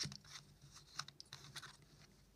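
Faint clicks and scratches of a metal LED head torch being handled, a side lamp head being unscrewed on its threads.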